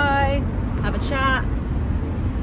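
Steady low rumble of a car's road and engine noise heard inside the cabin, with two short voiced sounds from a woman, one at the start and one about a second in.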